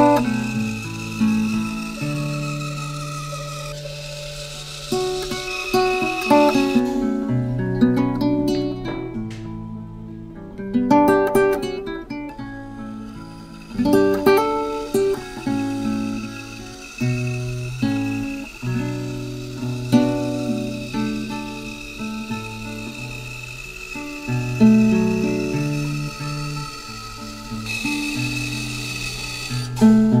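Background music: a plucked acoustic guitar playing a melody of single notes and strummed chords.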